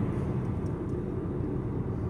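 Steady low rumble of a car driving along a road, engine and tyre noise heard from inside the moving car.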